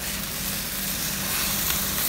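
Pork mince with chillies and onion sizzling steadily in a hot steel wok.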